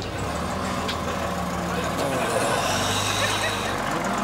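City bus engine running as the bus pulls away, its low note shifting about halfway through, with a hiss of air in the middle.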